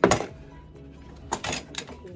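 Hard plastic storage-bin lid being cut and handled: one sharp knock right at the start, then a few lighter clicks and taps about a second and a half in, over background music.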